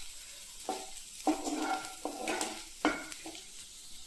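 Chopped onion, green chillies and cumin seeds sizzling steadily in butter in a non-stick frying pan, with a spatula scraping and stirring them in several short strokes over the first three seconds, then only the sizzle.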